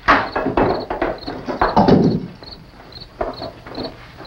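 Wooden knocks and clatter for about two seconds as a wooden table is wrenched and pulled apart, then quieter. Crickets chirp steadily underneath.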